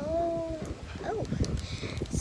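A child's voice holding a drawn-out hesitant vowel like "um", then a short murmur. Near the end comes a faint rustle of thin plastic packaging being handled.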